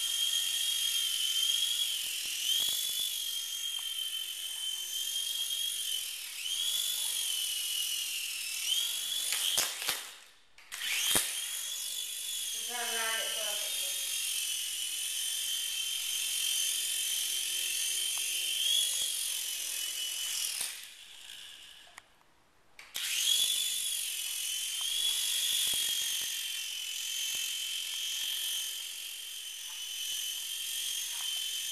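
A small electric coaxial RC helicopter's rotors and motors give a steady high whine that wavers in pitch as it flies. The whine cuts out twice, briefly with a few clicks about ten seconds in and for about two seconds past the twenty-second mark, and each time it rises back up as the motors spin up again.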